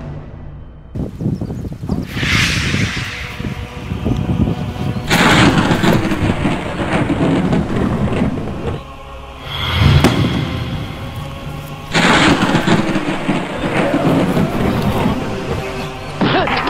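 Film soundtrack: dramatic music overlaid with loud sound effects. Dense noisy swells start abruptly about five and twelve seconds in, with a deep hit near ten seconds.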